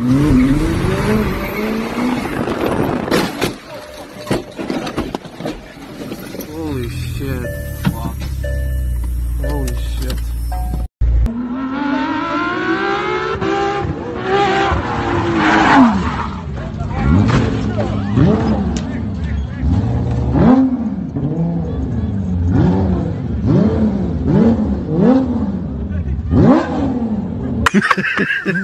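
Car engines revving hard across a few separate clips, the pitch rising and falling again and again, with an abrupt cut about eleven seconds in.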